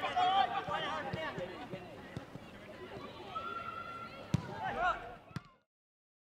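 Shouting voices of footballers on an outdoor pitch, calling "go", with a sharp thud of a football being kicked about four seconds in; the sound then cuts out to silence near the end.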